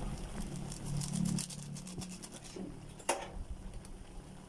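Pot of chicken, carrots and potatoes simmering in water, a light bubbling patter with fine crackling ticks that thin out after about two and a half seconds. One sharp click comes about three seconds in.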